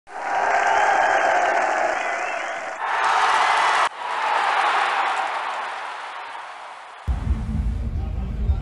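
Crowd applause and cheering mixed with music, in a couple of sections that fade away. About seven seconds in it cuts abruptly to a low outdoor rumble.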